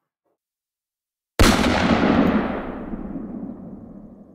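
An edited-in transition sound effect: after a silent gap, a sudden loud bang that dies away over about three seconds, its high end fading first.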